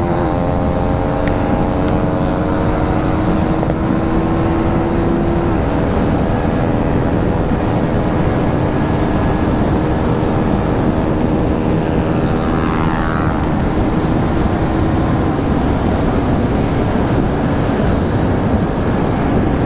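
KTM Duke motorcycle engine held at full throttle at high revs as the bike accelerates from about 100 to 145 km/h: a steady, loud drone whose pitch steps down slightly about five seconds in. Heavy wind rush on the helmet-mounted microphone runs under it.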